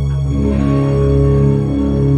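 Live rock band beginning a song: electric guitar and Nord keyboard chords held over a steady low bass note, with no drum beat yet.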